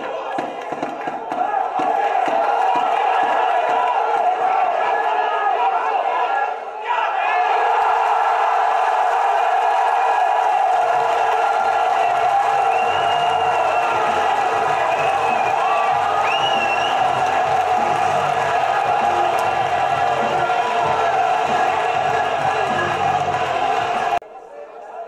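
Football supporters in the stands chanting and singing together in a continuous wall of voices. For the first few seconds there are regular beats, about two or three a second.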